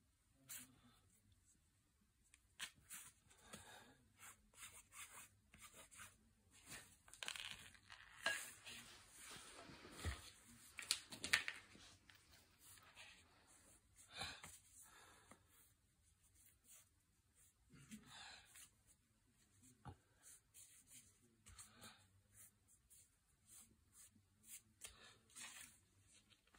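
Fabric rustling as it is handled and cut with scissors: irregular short scrapes and snips, busiest about a third of the way through.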